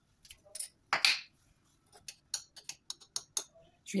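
A metal spoon scooping salt from a canister: a short rustle about a second in, then a run of quick light clinks and scrapes of the spoon against the container.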